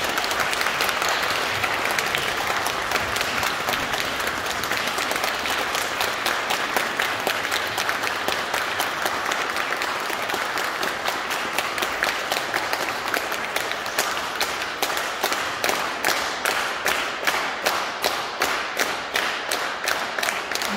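Audience applauding. In the second half the applause falls into steady rhythmic clapping in unison.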